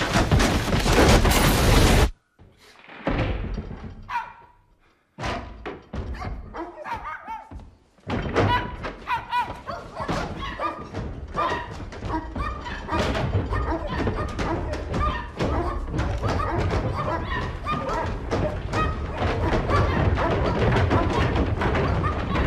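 A film soundtrack: music mixed with many dull thuds. A loud, dense passage cuts off suddenly about two seconds in. After a few sparse moments with near-silent gaps, the music and thuds fill in again and run steadily from about eight seconds in.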